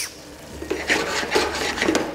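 Wooden spoon scraping and stirring against a stainless steel pan of simmering cherry tomato sauce, in several rough strokes.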